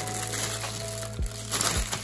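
Clear plastic wrapping crinkling as it is handled and pulled at to open a wooden massage roller, over steady background music.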